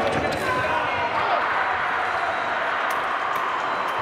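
Voices carrying in a large fencing hall, with sharp taps and thuds of the foil fencers' feet on the piste as the bout resumes and they attack. A faint steady high tone runs underneath.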